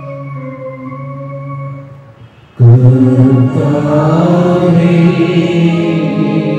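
Church hymn: an organ holds a chord, dips briefly, then singing with organ accompaniment comes in loudly about two and a half seconds in.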